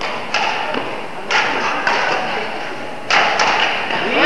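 Badminton rackets striking a shuttlecock during a rally, four sharp hits about a second apart, each ringing on in the hall's echo.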